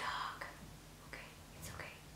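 Faint breathy whispering and soft mouth sounds in a few short bits, trailing off after a spoken exclamation.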